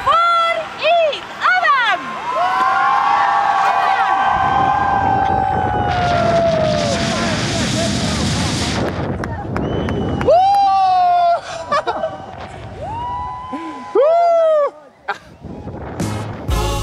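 Excited shouts and whoops around a rope jump off a cliff, then a rush of wind over a helmet-mounted camera during the free fall, from about four to nine seconds in. After that come more long whoops and yells as the swing takes up.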